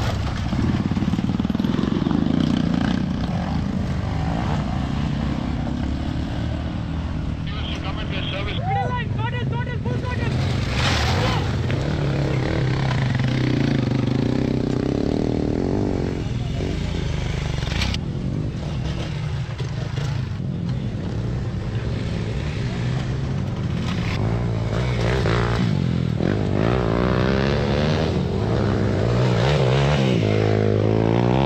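Off-road motorcycle engines running at low revs, rising and falling a little as the bikes are ridden slowly over rocks. Spectators' voices and calls sound over them, most clearly around the middle.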